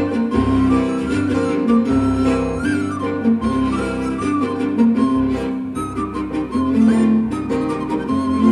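Viola and piano playing an instrumental passage between sung verses: a bowed viola melody over steady piano chords and bass notes.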